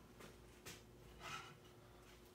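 Near silence with a faint steady hum, broken by a soft click about two-thirds of a second in and a faint brief rustle just past a second in: light handling of tools on a wooden workbench as a leather strop is fetched.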